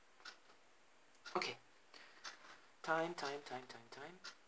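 A woman's voice making wordless sounds, with a longer broken vocal sound near the end. Between them come a few light clicks and rustles of rolled paper bundles being handled.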